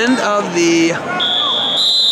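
Scoreboard buzzer ending the second period of a wrestling bout. It starts about a second in as one steady high tone that steps up slightly in pitch. Before it, a man holds a shout.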